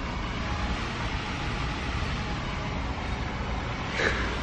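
Steady store background noise with a low rumble, starting abruptly as the scene cuts in, with no distinct events.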